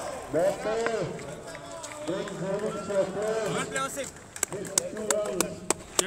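Men's voices talking and calling out, with several sharp clicks in the last two seconds.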